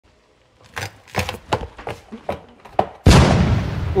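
Quick, irregular sharp knocks, about eight in two seconds, then a loud sudden boom that dies away over about a second.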